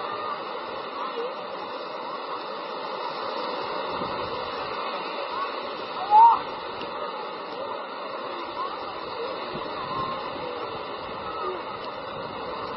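Beach ambience: a steady wash of small waves breaking at the shore, with faint voices of people around the water and one louder call about six seconds in.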